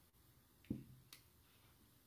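Near silence, broken by a soft thump a little under a second in and a sharp click about half a second after it.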